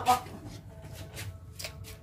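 Metal ladle scraping and knocking against an aluminium cooking pot and a plate while serving food, a few short light clinks spread over two seconds.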